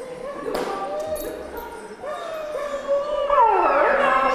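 A dog whining in long, wavering, high notes, louder and more varied near the end: the excited whining of a dog straining to reach its handler when called.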